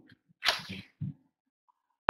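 A single sudden, explosive burst of breath from a man, fading over about half a second, followed by a short faint sound about a second in.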